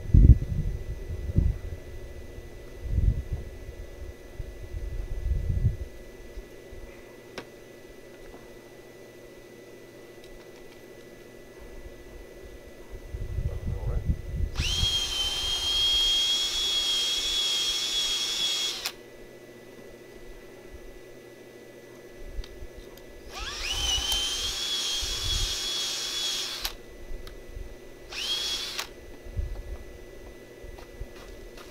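Cordless drill boring holes into the wooden frame of a raised bed: two runs of about four and three seconds, each spinning up with a rising whine to a steady high pitch, then a brief third burst near the end.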